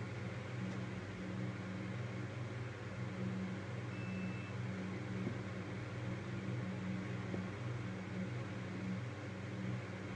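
Steady low hum with an even hiss, with a short faint high beep about four seconds in.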